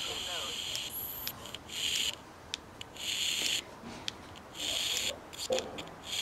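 Hiss from a 433 MHz superregenerative receiver module played through a small speaker, cutting out and coming back about three times, with a few short clicks: the hiss goes quiet whenever the nearby FM handheld transmits, the receiver quieting on the carrier.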